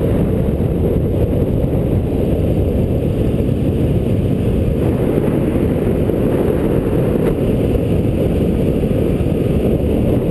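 Steady, loud wind rushing over an action camera's microphone as a bicycle descends fast down a paved road.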